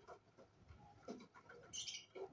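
Faint sounds of cockatiels in a nest box: soft bird sounds and small movements, with a brief higher-pitched burst near the end.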